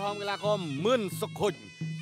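Traditional Khmer boxing ring music: a reedy sralai oboe plays a wavering, nasal melody with pitch glides over a steady low drone, mixed with a commentator's voice.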